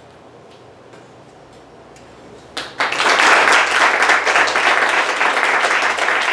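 Small audience applauding. The room is quiet at first; then the clapping breaks out suddenly about two and a half seconds in and carries on at full strength.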